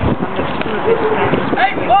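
Marching cadets' shoes striking the road surface in step as the squad passes close by.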